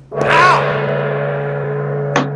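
A gong struck once, about a fifth of a second in, then ringing and slowly fading, with a brief wobble in its pitch as it sounds.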